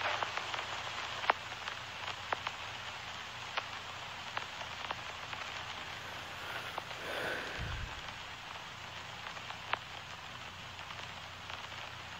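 Low steady hiss with scattered soft clicks and crackles, and no music or speech. A single low thump sounds about seven and a half seconds in.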